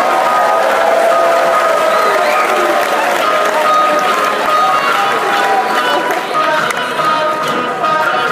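Background music playing in a large hall, with a crowd of students talking and some clapping underneath.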